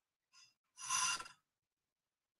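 A man's short breath out near the microphone, a sigh-like puff of air about a second in, with a fainter breath just before it.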